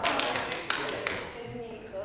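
A few sharp taps in the first second, over a faint voice.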